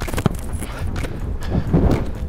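A football kicked during a shooting drill: a few sharp knocks and thuds of the ball being struck and caught, with footsteps, over a steady low rumble.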